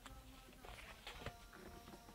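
Near silence with a few faint clicks and rustles of a mailed parcel's packaging being handled as it is opened.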